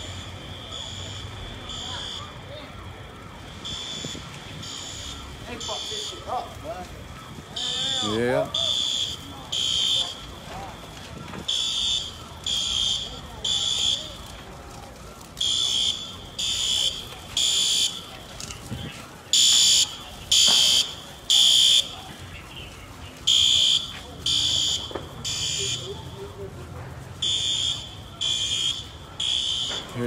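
Fire alarm sounding the three-beat evacuation pattern: three high beeps a little under a second apart, with the group repeating about every four seconds.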